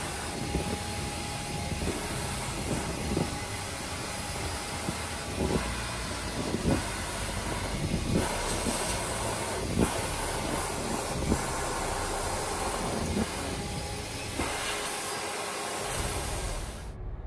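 Numatic George vacuum cleaner running, a steady rushing hiss of suction at its stainless steel wand as it pulls in clumps of fur, broken by a few sharp knocks.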